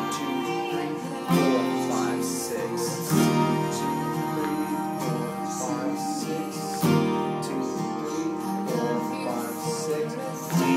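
Acoustic guitar, capoed at the third fret, strummed slowly through open chords, with a few heavier strokes standing out a few seconds apart.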